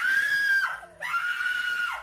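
A young woman screaming in fright: two long, high-pitched screams, the second starting about a second in, each dropping in pitch as it breaks off.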